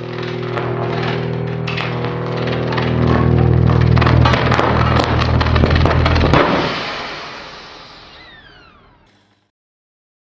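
Outro sound effect: a loud electrical-sounding buzz with crackling over it, swelling in loudness for about six seconds, then fading out with falling whistling tones and stopping near the end.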